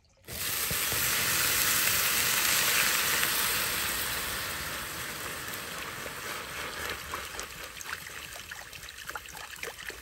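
Water hissing and sizzling hard in a hot steel frying pan over a campfire, turning to steam. It starts suddenly and loud, then slowly dies down into scattered popping and crackling as the pan settles toward bubbling.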